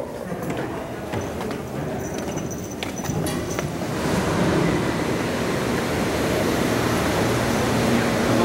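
Footsteps and small clicks on a stairway over a low background. From about four seconds in, a steady, louder rushing noise takes over.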